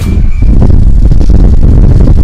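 Wind buffeting the camera microphone: a loud, continuous low rumble with no clear pitch.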